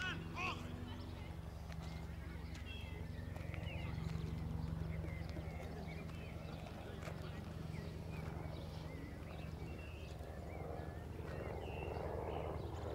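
Outdoor ambience at an amateur football pitch: a steady low buzzing hum with faint, distant shouts from players on the field.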